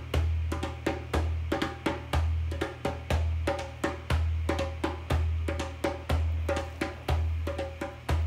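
Background percussion music: a low drum beat about once a second, with quick clicking strikes and short pitched notes between the beats.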